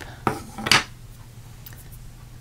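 Two sharp hard-plastic clacks about half a second apart as rubber-stamping gear (a clear acrylic stamp block and an ink pad) is handled and set down on a tabletop; the second clack is louder.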